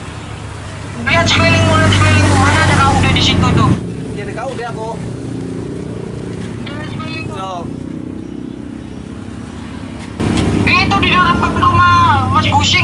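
A man wailing in loud, wordless mock crying: one burst from about a second in to nearly four seconds, and another starting near ten seconds. Quieter voice sounds come in between, over a low steady hum.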